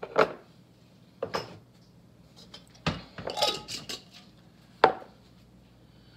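Kitchen items knocking and clinking against the countertop and dishes: a few separate sharp knocks, with a short burst of clatter about halfway through.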